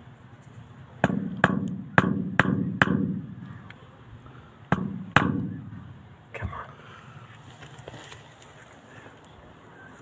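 Claw hammer striking the handle of a screwdriver used as a chisel on a glued PVC downpipe fitting, to break the joint apart. There are five sharp blows in quick succession, then two more a couple of seconds later and a lighter one after them.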